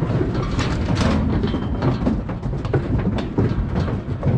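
Calves' hooves clattering and knocking on the metal floor of a livestock trailer as the cattle come off it, with the trailer and steel alley panels rattling: a dense, irregular clatter.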